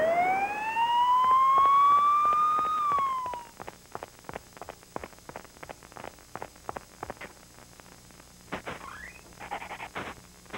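A whistle-like cartoon sound effect: one pitched tone that glides steadily upward for about three seconds, then slides back down and cuts off. After it come faint, scattered clicks.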